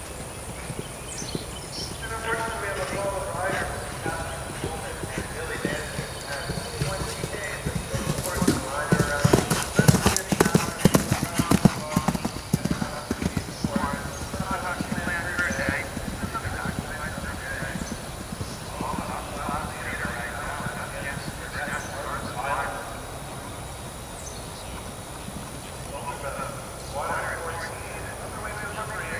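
A horse's hoofbeats as it gallops past on turf: a fast run of thuds, loudest for about four seconds midway, then fading. Voices talk faintly in the background.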